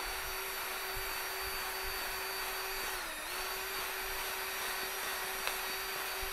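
Cordless drill with a paddle mixer running steadily, stirring smoothing paste in a small plastic tub. Its whine dips briefly in pitch about three seconds in, as the motor slows under load.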